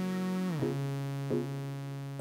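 A synthesizer holds a single note in a music track. About half a second in it slides down in pitch, then holds the lower note and slowly fades.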